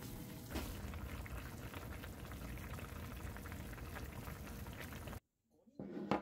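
Sukiyaki broth simmering in a frying pan, a steady bubbling hiss that cuts off suddenly about five seconds in, with a short knock near the end.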